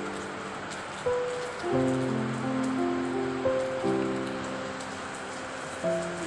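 Slow background music with held notes that change about every second, over the steady hiss of rain falling on a paved yard.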